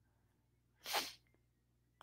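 A single short, sharp rush of breath or air from the nose into a close headset microphone, about a second in, during a pause in speech.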